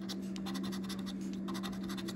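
A metal coin scratching the coating off a paper scratch-off lottery ticket in rapid short strokes.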